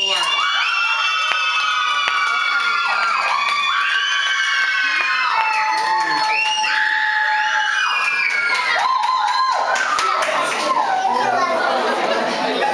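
A group of young children shouting and squealing together in long, high-pitched cheers, with a few claps, turning to chatter near the end.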